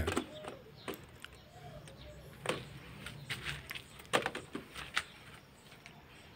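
A few faint, scattered clicks and knocks of a large plastic bottle being handled and set upright on soil.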